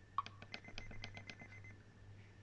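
Sony D-E351 CD Walkman skipping forward through tracks while its skip button is held: a quick run of about a dozen light clicks, roughly ten a second, stopping shortly before the track starts.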